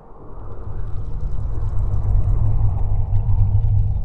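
A deep, loud rumble that swells up over the first second and then holds steady, a low cinematic sound effect.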